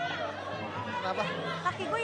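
Several people talking over one another in a lively jumble of voices.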